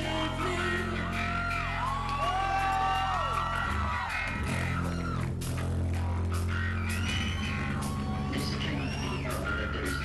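Live rock band playing: electric guitar, bass and drums, with held bass notes under a melody line whose notes bend up and down.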